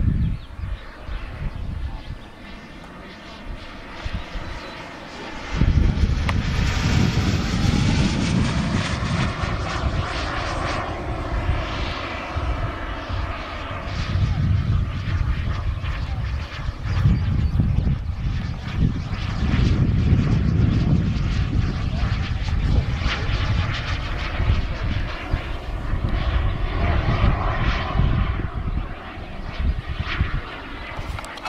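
Gas turbine of a King Cat radio-controlled jet in flight: a loud jet rush and whine that swells and fades, its pitch rising and falling as the plane makes passes. It is faint for the first few seconds and much louder from about six seconds in.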